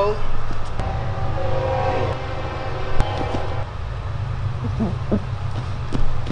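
Grappling on a gym mat: a single sharp thump about halfway through, over a steady low hum and a drawn-out voice.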